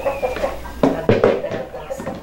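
Two sharp knocks about a second in as a curd presser and cheese mold are handled against a tray while pressing queijo coalho, with brief voice fragments.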